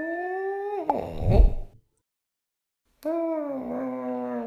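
Logo-sting sound effect of a cat yowling: one long call ends with a deep thump about a second and a half in, and after a short silence a second drawn-out yowl, falling then holding its pitch, starts near the end.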